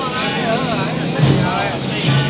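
Loud, busy sound of a temple street procession: voices mixed with the traditional procession band's music, a wavering pitched line rising and falling over a steady low drone.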